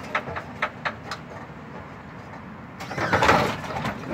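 Lincoln lowrider's hydraulic pump running as a switch lifts the front of the car, with a few clicks in the first second and a louder stretch near the end.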